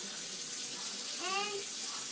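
Steady hiss like water running from a tap. Just past the middle comes one short vocal sound from a young child, rising in pitch.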